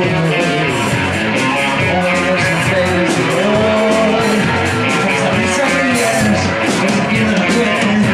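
Live rock band playing loudly: distorted electric guitars over a drum kit, with cymbals struck steadily several times a second.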